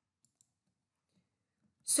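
Near silence, broken by a couple of faint, short clicks about a third of a second in.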